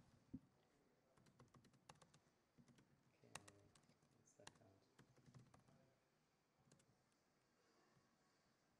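Faint laptop keyboard typing: scattered, irregular key clicks.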